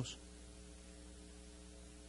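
Faint, steady electrical mains hum with light hiss in a pause between spoken words.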